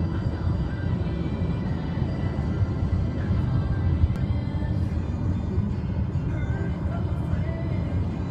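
Steady road and engine rumble inside a moving car's cabin, with a song playing on the car stereo above it.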